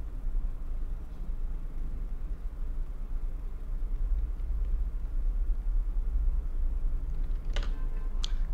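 Steady low hum with a faint rumble under it, and no clear separate events.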